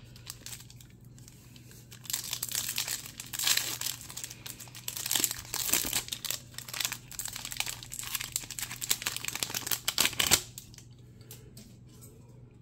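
Wrapper of a baseball card pack crinkling and tearing as it is pulled open by hand, starting about two seconds in and going on in irregular crackles until shortly before the end, loudest just before it stops.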